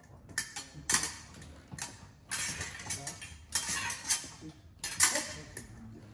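Épée blades clashing: a run of sharp metallic clicks and clinks, with two longer stretches of steel grating along steel between them. The loudest clash comes about five seconds in.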